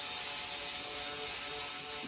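Cheap cordless screwdriver motor running steadily, driving an M3 spiral tap straight through a hole in an aluminium part to cut the thread.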